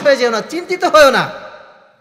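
Only speech: a man preaching in Bengali, his voice falling away near the end.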